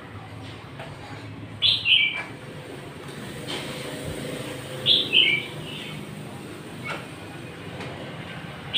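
A bird calling twice, about three seconds apart; each call is short and high and steps down in pitch over two or three notes. Between the calls a low rumble swells and fades.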